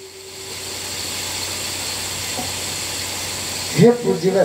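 A steady hiss of background noise, building up over the first half-second and then holding level, with a man's voice starting again just before the end.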